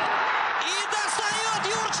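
Stadium crowd noise under a man's long, wavering shout that starts about half a second in: a reaction as the goalkeeper saves the penalty kick.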